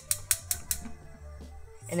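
Wire whisk clicking against a stainless steel saucepan as it is picked up and starts whisking flour into water, about half a dozen quick clicks in the first second, then quieter.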